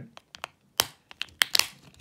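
A sunglasses lens being pressed into a plastic frame's groove: a handful of sharp plastic clicks and creaks as it seats, two of them louder than the rest.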